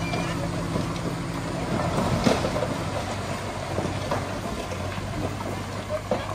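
Heavy diesel earthmoving machinery running steadily, with a sharp knock about two seconds in.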